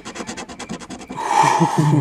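Scratch-off lottery ticket being rubbed off with a cloth-gloved fingertip: quick rasping strokes, about ten a second, getting louder about a second in.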